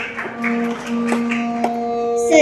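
Kirtan accompaniment music: steady held harmonium notes over a beat of sharp taps about twice a second.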